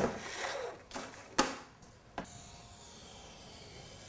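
Mat board and paper being handled on a worktable: sharp slaps as the boards are set down, one at the start, the loudest about a second and a half in, and a smaller one just after two seconds. A soft, steady rubbing hiss follows.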